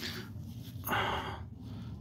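A person's single short breath about a second in.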